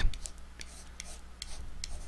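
Stylus tapping and clicking on an interactive writing board as a fraction is written: a handful of short, sharp ticks at uneven spacing over a faint low hum.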